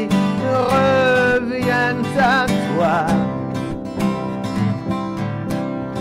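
Live worship song: acoustic guitars strummed in a steady rhythm under a man's voice singing long, wavering notes.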